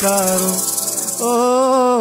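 A male voice sings two long held notes of a Gujarati devotional folk song, with a short gap between them. Under the first note runs a fast, high rattle, and there is no low drum beat in this stretch.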